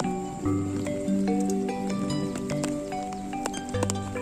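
Sundanese gamelan degung music: struck bronze notes ring and overlap in a flowing melody, with a low note coming in about half a second in and again near the end, and sharp taps between.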